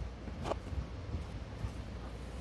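Faint handling noise of a thin cord being worked over a car's roof rail, with one short brushing sound about half a second in, over a low steady rumble.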